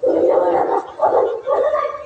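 A woman's voice wailing loudly in anguish, in three wavering, pitched cries broken by short pauses.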